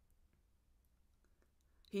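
Near silence with a few faint, scattered clicks, then a woman starts speaking right at the end.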